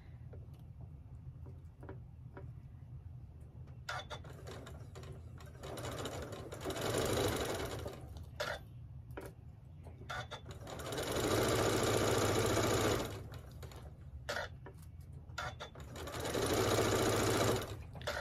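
Janome MC9400 sewing machine stitching a quarter-inch seam through pinned quilting cotton in stop-start runs. The three loudest runs of stitching come at about six, eleven and sixteen seconds in, with slower, lighter stitching between them over a steady low hum.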